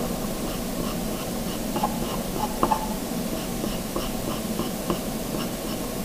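Charcoal pencil scratching on paper in short, quick feathering strokes, faint and repeating about two or three times a second over a steady hiss.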